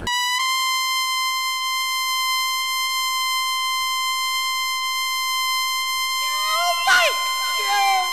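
Electronic sound effect of an animated logo: a steady buzzing tone that cuts in abruptly and holds for about six seconds. Then swooping, gliding synth sounds come in, with a sharp hit about seven seconds in.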